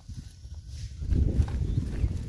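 Quick footsteps on a dirt path, with a low rumbling noise that grows louder about a second in.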